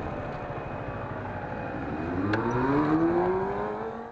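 Honda CBR125R's single-cylinder four-stroke engine pulling under acceleration, its note rising steadily over the last two seconds, with wind rush on the bike-mounted microphone.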